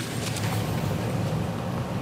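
A courtroom full of people rising to their feet: a steady low rumble of shuffling and movement, with a few light knocks near the start.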